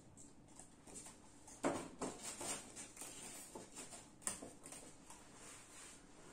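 Faint handling noises as model railway track and a steel ruler are moved about on a foam board: a few scattered light taps and clicks, the sharpest a little under two seconds in and another about four seconds in.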